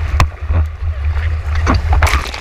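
Wind and water buffeting a board-mounted action camera's microphone in a heavy low rumble, with breaking whitewater splashing over the surfboard; sharp splashes hit about a quarter second in and again near the end.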